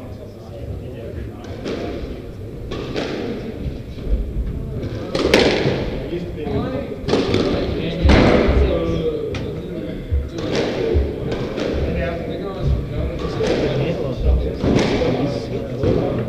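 Squash ball being struck by racquets and hitting the court walls during a rally, a sharp hit about every second, some in quick pairs, each ringing with the echo of the enclosed court.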